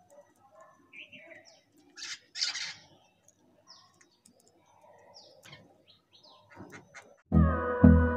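Birds chirping and calling in short scattered bursts, the loudest about two and a half seconds in, with faint taps from crows pecking rice off concrete. Music comes in loudly shortly before the end.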